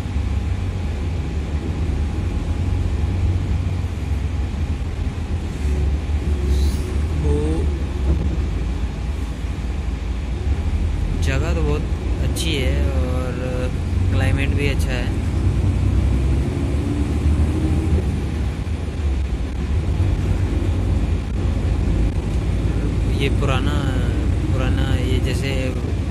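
Inside a moving coach bus: the steady low rumble of the engine and tyres on the road, with voices talking briefly in the middle and near the end.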